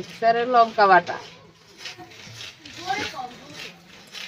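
Speech: a voice talking briefly near the start, then quieter talk.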